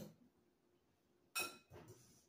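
A wire whisk clinking against a glass mixing bowl: one sharp ringing clink about a second and a half in, then a fainter tap.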